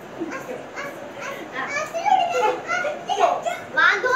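Several children talking and calling out over one another at play.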